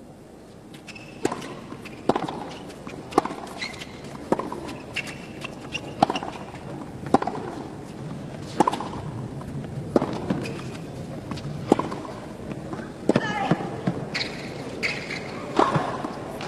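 Tennis rally: sharp pops of the ball off the racket strings, one about every second or so, over a steady low crowd hum, with brief voices near the end.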